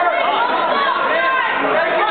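Crowd of spectators in a gym chattering and shouting over one another, many voices overlapping without a break.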